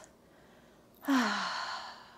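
A woman's audible sigh-like exhale about a second in. It starts with a short voice that falls in pitch and fades as a breathy out-breath, the breath out of a yoga side stretch.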